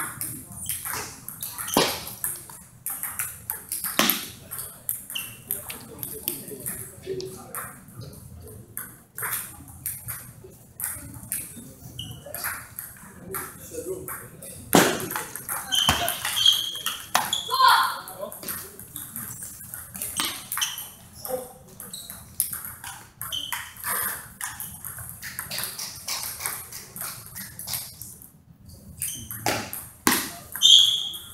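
Table tennis rallies: the ball clicks sharply off the paddles and the tabletop in quick back-and-forth exchanges, with short breaks between points.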